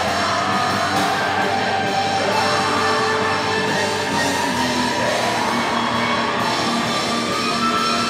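A funeral doom metal band playing live on electric guitar, bass guitar and drums: a loud, steady wall of slow, distorted chords held long and shifting slowly in pitch.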